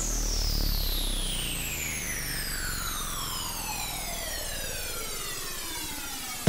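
A synthesizer sweep gliding slowly and steadily down in pitch, a rich buzzy tone with many overtones that fades a little as it falls: a drawn-out downsweep break in electronic backing music.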